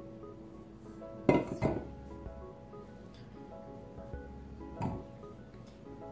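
Stainless steel mixing bowl clanking and scraping as dough is scraped out of it with a spatula: two sharp clanks about a second and a half in, and another near the end.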